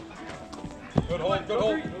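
Faint field sounds from a wiffleball game: a single sharp knock about a second in, followed by players' voices calling out.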